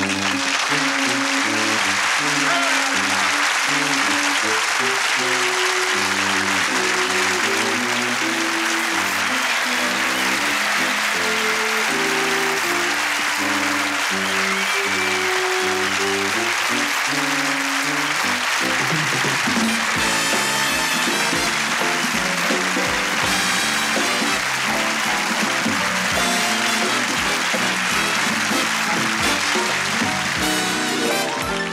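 Studio audience applauding over a band playing closing theme music, with a steady drumbeat coming in about two-thirds of the way through.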